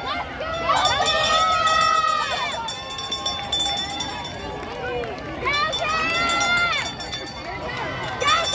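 Spectators shouting long, drawn-out cheers to runners in a track race: two loud held shouts, about a second in and again about five and a half seconds in, over outdoor crowd noise.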